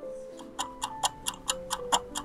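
A clock-ticking sound effect, about four or five ticks a second, starting about half a second in, over background music.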